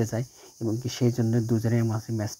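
A man's voice talking in Bengali, narrating, over a steady high-pitched hiss.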